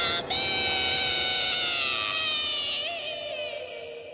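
A young woman's long, high-pitched scream of shock, held for about three seconds, slowly falling in pitch and fading away near the end.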